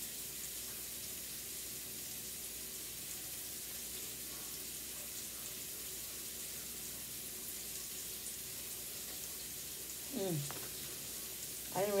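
Onions frying in a pan, a low, steady sizzle.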